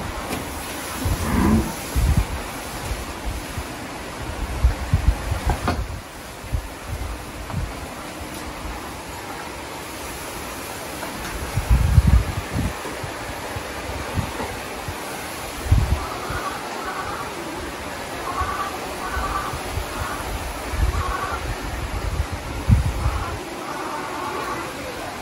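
Homemade thermal fogging machine running, a steady loud hiss-like noise as it spews insecticide smoke, with irregular low thumps on the microphone.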